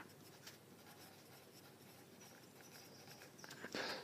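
Faint scratching of a graphite pencil writing on paper.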